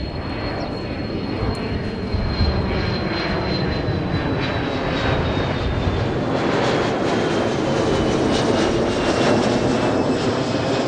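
Large four-engine jet flying low overhead: steady jet engine noise that grows slightly louder, with a high whine that slowly falls in pitch as it passes.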